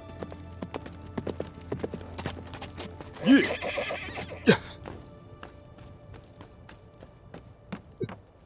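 Horse hooves clip-clopping at a walk, with a horse whinnying about three seconds in, over background film music.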